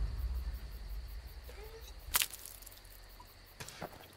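A low hum fading away, then a single sharp click about two seconds in and two softer clicks near the end.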